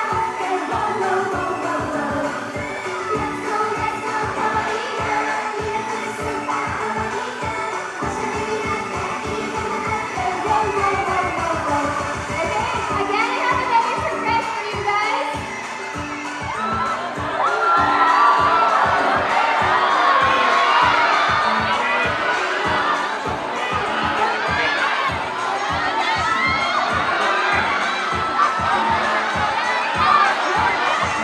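Upbeat Japanese pop song with a steady beat played through a hall's sound system, the beat dropping out for a few seconds around eight to thirteen seconds in. A large crowd cheers and screams over the music, loudest from about seventeen seconds on.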